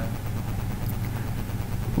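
Steady low hum with a faint hiss: the recording's background noise, with no distinct events.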